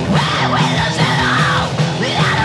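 Hardcore punk song with harsh, yelled death-voice vocals over a loud, driving band backing.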